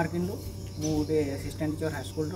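A man speaking in short phrases over a steady background hum with a faint high-pitched drone.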